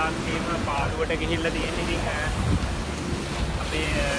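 Surf washing over a rocky shore with wind buffeting the microphone, under a man's voice talking.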